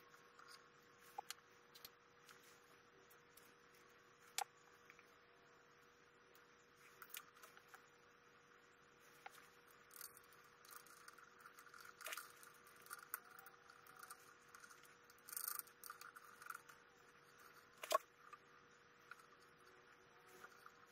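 Faint, scattered clicks and light taps of small metal parts being handled as a tool rest is fitted and slid onto the bed of a Boley & Leinen watchmaker's lathe.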